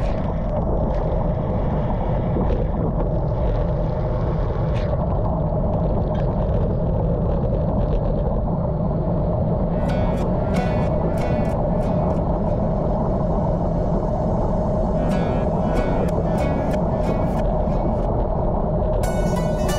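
Steady rush of wind and tyre noise from a road bike riding at speed on a wet road, heard close on the microphone, under background music. From about ten seconds in, clusters of short, bright high notes sit on top.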